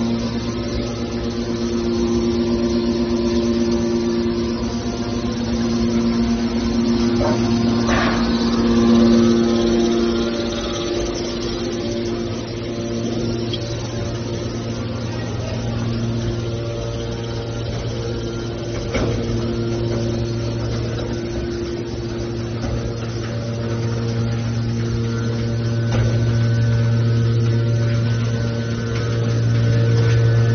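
Hydraulic power unit of a scrap metal baler running with a steady hum. Sharp metal knocks come about eight seconds in and again near nineteen seconds.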